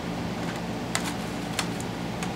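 A clear plastic blister pack being pulled open by hand: a few sharp plastic clicks and crinkles, over a steady low hum.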